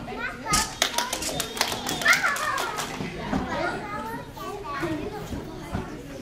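Children's voices chattering and calling over one another in a large gym hall, with a run of sharp knocks about half a second to two seconds in.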